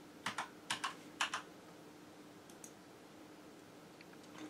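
Computer keyboard keystrokes: six quick clicks in three close pairs in the first second and a half, then two faint clicks a little later.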